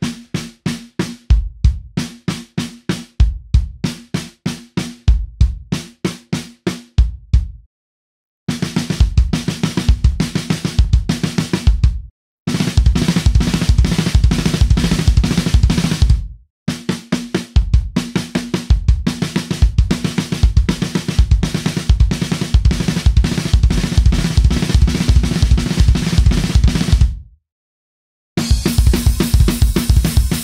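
Acoustic drum kit playing a single-stroke fill pattern: right-left-right-left on the drums, then two bass drum strokes (RLRLKK), repeated. It is played slowly at first, about one cycle every two seconds, then at full speed in fast runs that break off abruptly four times.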